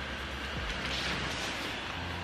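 Built-in electric blower fan of an inflatable teddy bear decoration running steadily as the bear fills with air: a low hum with a rush of air over it.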